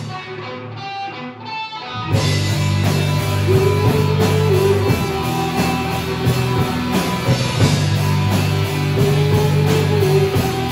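Rock band playing a heavy song live with drums, bass and distorted electric guitars. For about the first two seconds only a thinner, higher part plays, then the full band comes back in together, with a long held, wavering melody line over it.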